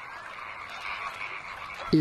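Many American flamingos calling at once in a crowded breeding colony: a continuous massed din of overlapping calls.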